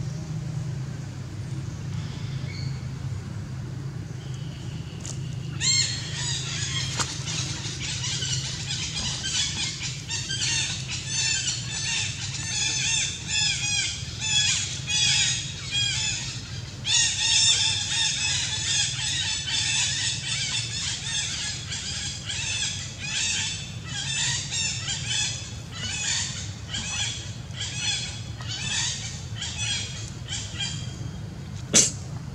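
High-pitched animal squeals, repeated quickly about twice a second, start about five seconds in and run on, with a short break partway, over a steady low hum.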